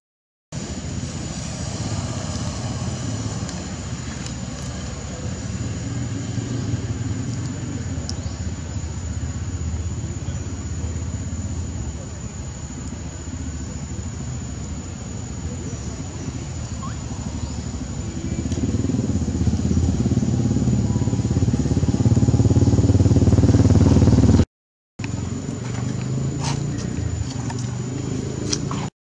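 Steady outdoor low rumble that swells for a few seconds and then cuts out abruptly near the end.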